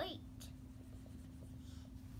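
Faint scratching of a marker tip drawing on a whiteboard, with a slightly stronger patch near the end.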